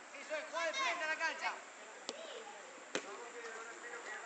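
Two sharp thuds of a football being kicked, a little under a second apart, after a burst of shouting voices.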